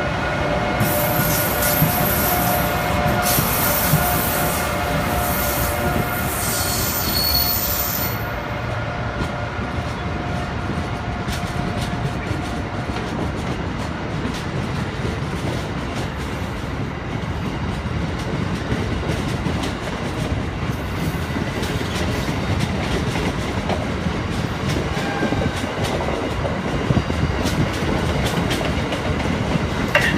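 Amtrak Northeast Regional train hauled by an AEM-7AC electric locomotive passing close by. The locomotive gives a steady whine with a high squeal for the first eight seconds. Then Amfleet coaches roll past with a steady rumble and a run of wheel clicks over the rail joints.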